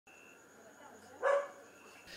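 A dog barks once, briefly, about a second in, over a faint background.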